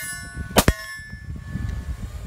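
A semi-automatic pistol shot, followed a split second later by a hit on a steel target, about half a second in. The ringing of the steel fades over about a second. Ringing from the previous shot and hit is still dying away at the start.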